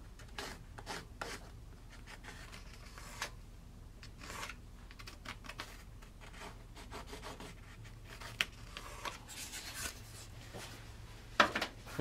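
Tracing around a thin wooden template onto a wooden block: faint, irregular scratching and rubbing strokes of the marking tool along the template edge, with a sharper knock of the template or block being handled just before the end.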